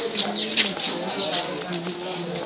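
Birds calling in quick, short chirps that fall in pitch, repeated several times a second, over a background murmur of voices.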